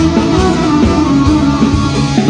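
Live band music led by electronic arranger keyboards, playing over a steady beat.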